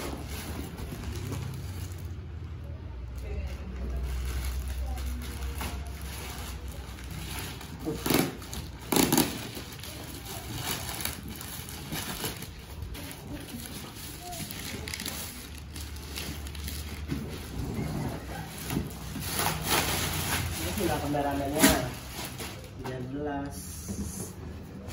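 Black plastic bag rustling and crackling as it is handled and pulled off a large cardboard box, with a few sharp crinkles or knocks, the loudest about eight and nine seconds in and again near the end, over a steady low hum.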